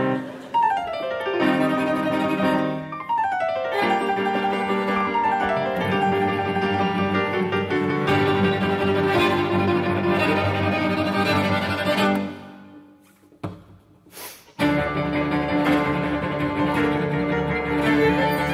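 Piano, two violins and cello playing fast classical chamber music together, with rapid falling runs in the first few seconds. About twelve seconds in, the music dies away to a pause of about two seconds, then comes back in loudly.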